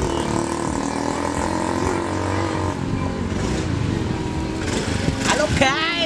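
A motor vehicle's engine running steadily, with people's voices over it near the end.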